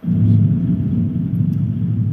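A loud low rumble that starts suddenly and holds steady.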